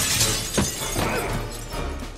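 Window glass shattering in a loud burst of breaking glass, with a sharp impact about half a second in, over dramatic film score music.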